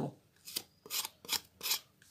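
Kitchen knife blade cutting the skin off a red apple in short peeling strokes: four short, evenly spaced cuts, about one every 0.4 seconds.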